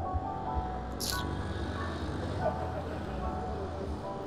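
Soft background music with sustained notes over a steady low rumble of city traffic, with a brief hiss about a second in.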